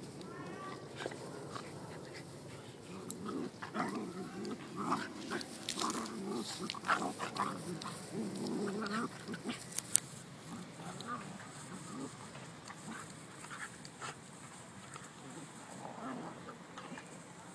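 A miniature schnauzer and a beagle play-wrestling, with growls and grunts in irregular short bursts that are thickest about four to nine seconds in and then die down. A single sharp tap comes near the middle.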